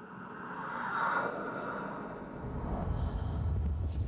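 Dark sound-design swell from a TV promo soundtrack: a rising whoosh about a second in, then a deep rumble that builds from a little past two seconds.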